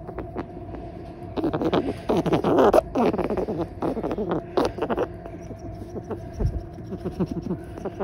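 Pet fancy rat honking repeatedly as it breathes, a harsh respiratory noise, loudest between about one and a half and five seconds in, over a steady low hum. It is the sign of a breathing problem, which the owner wonders may come from breathing litter-box urine fumes.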